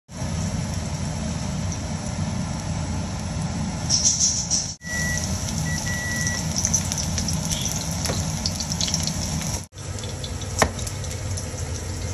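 Cooking oil and then minced garlic sizzling in a nonstick wok on a stove, a steady hiss over a low hum, with the sound jumping at two cuts. In the last couple of seconds a kitchen knife chops through the greens on a cutting board, one sharp chop standing out.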